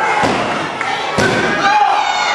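Two heavy thuds of wrestlers hitting a wrestling ring's mat, about a second apart, over shouting voices from the crowd.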